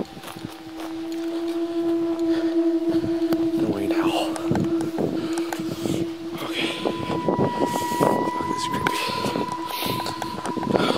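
Footsteps and rustling on the ground with camera handling noise, over a steady tone that drops out and is replaced by a higher steady tone about seven seconds in.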